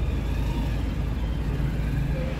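A steady low drone of a car's engine and running gear, heard from the back seat inside the cabin.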